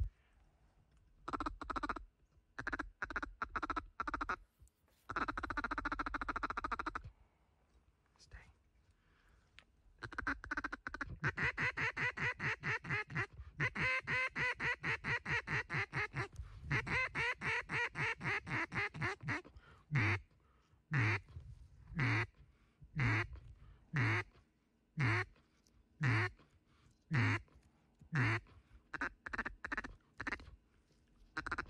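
Mallard-style duck quacking: a few separate quacks at first, then a long run of fast chattering quacks, then evenly spaced single quacks about one a second near the end.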